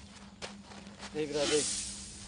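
A stream of dry granular material poured from a round metal tin, hissing from about a second in and fading near the end. A short click comes just before it.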